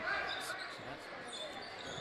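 A basketball being dribbled on a hardwood gym court, over a low, steady murmur from the crowd in the gym.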